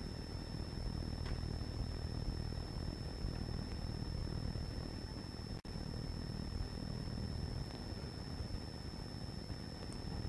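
Steady low hum and hiss of a lecture hall's background noise through the talk's sound system, with a thin high-pitched whine held throughout. The sound cuts out for an instant about five and a half seconds in.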